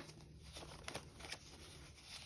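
Faint rustling of paper banknotes handled and fanned out by hand, with a few soft brief ticks.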